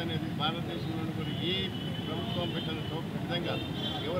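A man speaking in Telugu over a steady background of street noise.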